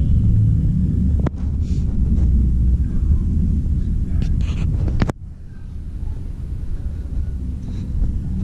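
Low rumble of wind buffeting a handheld camera's microphone while walking outdoors, broken by sudden jumps where the recording cuts; about five seconds in the level drops sharply and the rumble goes on quieter.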